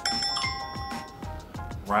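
A bright chime sound effect of several bell-like tones strikes once at the start and rings out, fading over about a second, marking a correct answer in the guessing game. Background music with a steady beat runs underneath.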